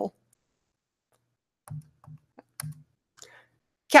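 A few soft clicks close together, about two seconds in, from keys pressed on a laptop to advance a presentation slide.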